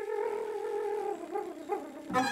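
Improvised wordless singing by a woman: one long held note that wavers and slides down in pitch toward the end.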